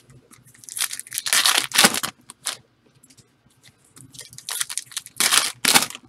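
Foil trading-card pack wrappers being torn open and crinkled in two bursts of a second or so each, with light clicks of handled cards between them.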